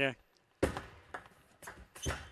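Table tennis ball in play: a sharp knock of the ball off the racket on the serve a little over half a second in, then a few lighter ticks of the ball on the table and racket.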